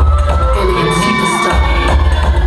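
Loud recorded dance music with a heavy pulsing bass beat, which drops out for a moment just past halfway. The audience cheers and screams over it.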